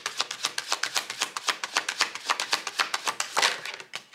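A tarot deck shuffled by hand, the cards slipping from one hand into the other in a rapid run of crisp clicks, with a longer swish of cards near the end.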